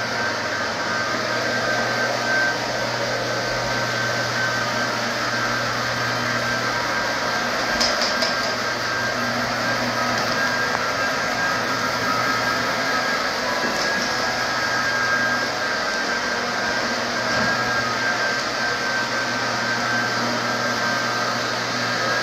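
Single-disc rotary floor machine running steadily on a sanded hardwood floor, with its dust-extraction vacuum: an even motor drone with a low hum and a thin high whine held throughout.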